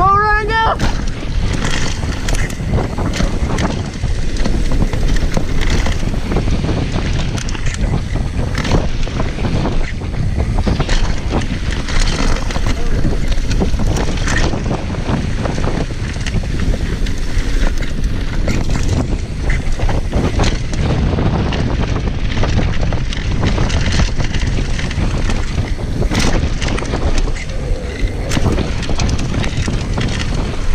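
Wind buffeting the microphone of a camera on a Transition TR500 downhill mountain bike, over a steady roar of tyres on a rough dirt trail, with frequent knocks and rattles from bumps. A brief rising tone sounds right at the start.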